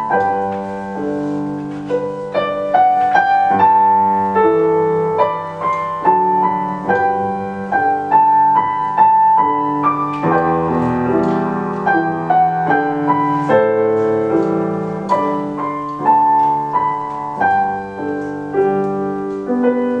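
Grand piano being played: a steady melody of single notes in the upper middle range over held chords lower down, with a fuller, deeper chord about halfway through.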